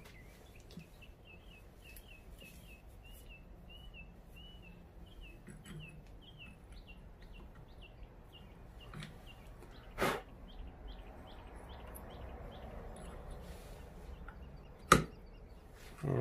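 Two sharp knocks, about ten and fifteen seconds in, as a stepper motor is set onto its aluminium mount on a mini mill's Y axis. A bird chirps in a quick repeated series in the background through the first two-thirds.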